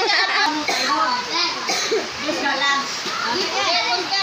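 Several children talking and calling out over one another, a steady jumble of overlapping young voices.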